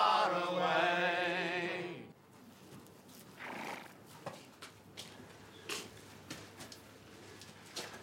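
A crowded room of men singing together in chorus, holding a long wavering note that breaks off abruptly about two seconds in. Then comes a much quieter stable with a horse: a short breathy sound from the horse, and a few light knocks and clicks as it shifts.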